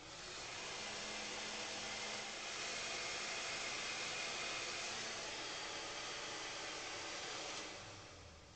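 A handheld pistol-grip blower gun blows a steady rush of air. It starts just after the beginning and cuts off shortly before the end.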